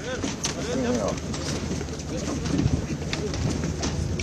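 Several people talking indistinctly at once, with a few short warbling cooing calls in the first second.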